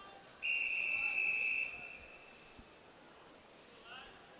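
A referee's whistle gives one long, steady, high blast of about a second and its echo dies away after. It is the long whistle of the backstroke start procedure, calling the swimmers in the water to the wall to take their starting position.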